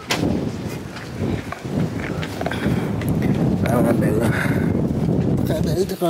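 Wind rumbling and buffeting on the camera microphone, with people talking indistinctly.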